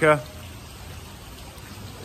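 A man's voice ends a word right at the start, then a steady, even background hiss with no distinct events.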